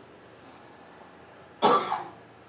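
A person coughs once, a sudden loud cough about one and a half seconds in, after a stretch of faint steady hiss.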